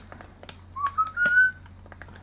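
Someone whistling three short notes, each a step higher than the last, the third held a little longer, with a few faint clicks.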